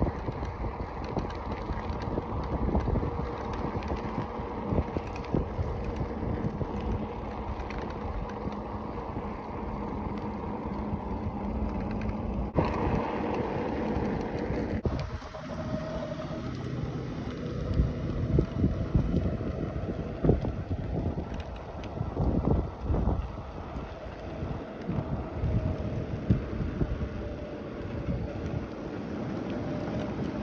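Wind buffeting the microphone and road rumble while riding a bicycle along a paved drive. The sound changes abruptly about twelve and fifteen seconds in.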